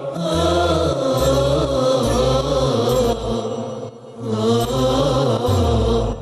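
Devotional chant sung in chorus over deep, pulsing low bass notes, as theme music. The singing dips briefly about four seconds in, then carries on.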